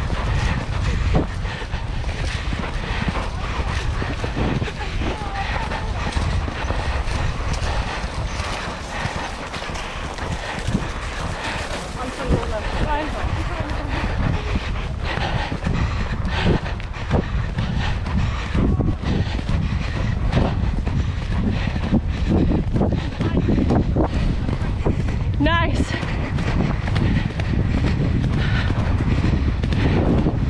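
Hoofbeats and movement of a ridden horse, with a heavy rumble on the microphone and voices in the background.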